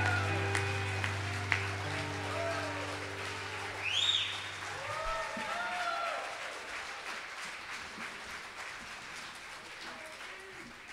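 A live band's closing chord rings out and fades away over about five seconds while the audience applauds. A whistle and cheering voices rise from the crowd about four seconds in, then the applause slowly dies down.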